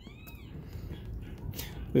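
An animal's call: one short, high cry near the start that rises and then falls in pitch.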